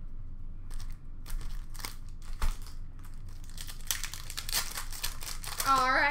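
Hockey card pack wrapper crinkling and tearing as a pack is opened, with cards being handled. Scattered light clicks in the first half give way to a denser crinkle in the second half.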